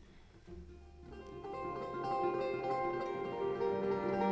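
Acoustic guitar starting a song's quiet picked intro about half a second in, its notes ringing on and growing louder.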